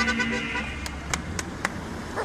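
Street noise from a marching crowd and passing traffic. A steady horn-like tone fades out in the first half, then come four sharp clicks about a quarter second apart.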